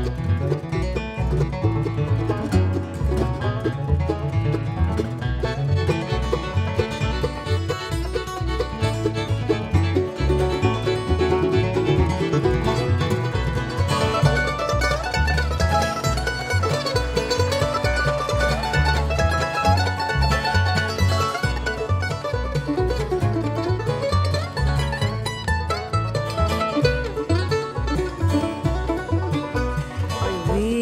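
Bluegrass band playing an instrumental break between sung verses: banjo, mandolin, fiddle and acoustic guitar over an upright bass keeping a steady beat.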